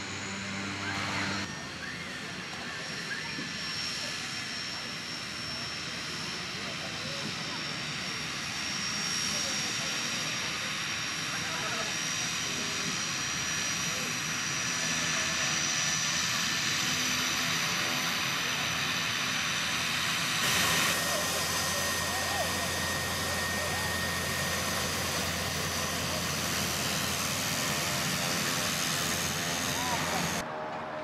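Pilatus PC-6 Porter's engine and propeller running as the aircraft taxis, a steady drone with a high whine that rises slightly. About two-thirds through the sound changes suddenly, with a deeper hum coming in.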